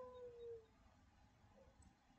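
Near silence: room tone, with one faint short tone, falling slightly in pitch, in the first second.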